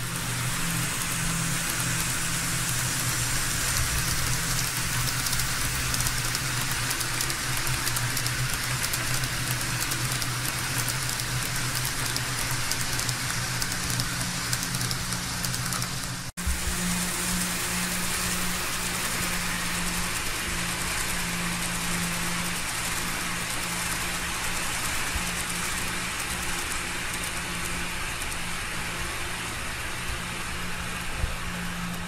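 Kato N-scale E7A diesel locomotives pulling passenger cars along the track: a steady whir of the small motors over the hiss of wheels rolling on the rails. The sound breaks off for an instant a little past halfway, then carries on the same.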